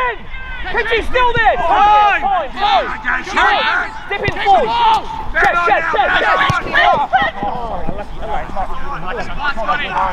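Several men shouting and calling to one another during a soccer match, the words indistinct and overlapping.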